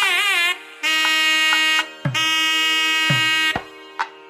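Nadaswaram playing South Indian wedding music: a bending, ornamented phrase, then long held notes broken by short gaps. A few low drum strokes come in the second half.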